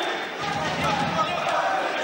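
Indoor arena crowd noise with indistinct voices and shouting during a cage fight.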